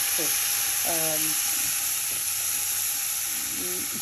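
Beef steak sizzling in a hot, empty frying pan: a steady hiss of searing that began the moment the meat went in.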